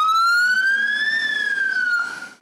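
Ambulance siren wailing: one slow rise in pitch that peaks a little past a second in, then begins to fall.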